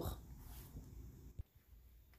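Near silence: faint room tone with one small click about a second and a half in.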